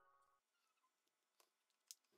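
Near silence: the last faint tail of fading piano music, then a couple of faint clicks near the end.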